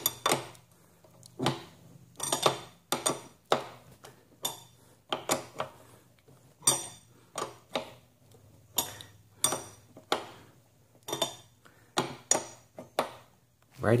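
Metal pedal wrench clinking against the DeskCycle 2's pedal and crank arm as a pedal is turned on, in irregular sharp clinks about two a second with a brief ring after each. The pedal is being turned counterclockwise, which loosens it instead of tightening it.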